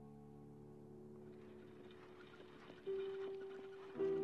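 A piano chord fades away, followed by a quiet stretch with faint scattered ticks. Near the end a single held note begins the next phrase of the music.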